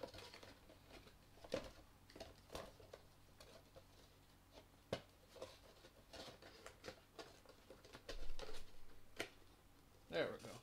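Scattered small clicks, taps and rustles of a shiny toy packaging box being handled and closed up, with a louder bump about eight seconds in.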